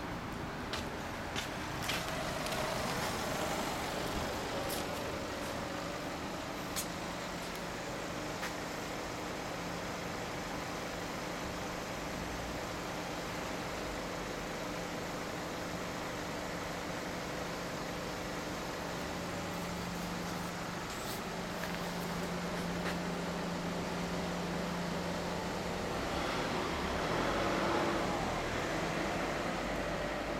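Engine idling steadily: an even low hum, with a few light clicks in the first seconds and a brief swell of noise near the end.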